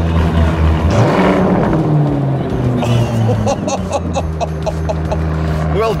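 Lamborghini Urus twin-turbo V8 running through an aftermarket exhaust: it is revved once, rising then falling in pitch, and settles to a steady idle after about three seconds.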